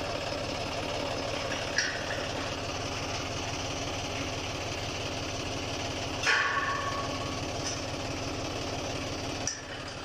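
John Deere tractor's diesel engine idling steadily with an even low pulse. A short click comes near two seconds in, and a loud metallic clank with a brief ringing tail a little after six seconds.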